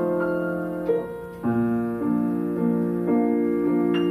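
Grand piano played solo: held chords changing every half second or so, with a brief lull just after a second in before the next chord comes in.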